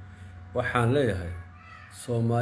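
A man's voice: one drawn-out word, rising and falling in pitch, from about half a second in until past the middle, with short pauses on either side.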